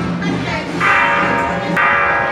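Bell-like metal percussion struck twice about a second apart, each stroke ringing on, as part of a temple procession's music.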